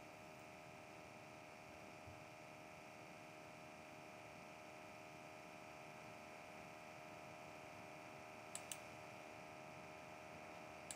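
Near silence: faint room tone with a steady low hum, and two quick mouse clicks close together about eight and a half seconds in.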